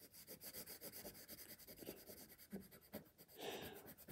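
Faint scratching of a soft 5B graphite pencil on paper in rapid short back-and-forth strokes, pressed hard to shade an edge black.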